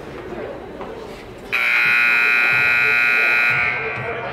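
Ice rink scoreboard horn sounding one loud, steady buzz for about two seconds, starting about a second and a half in, over a murmur of voices.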